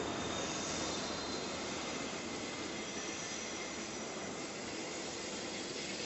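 Irish Rail commuter train running along a station platform: a steady rumble with a faint high squeal over it.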